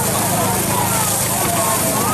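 Vegetables and soaked soybean 'vegetarian meat' with sauce sizzling in a hot wok over a burner: a steady hiss with a low hum underneath.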